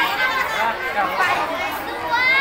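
Chatter: several voices talking over one another at once.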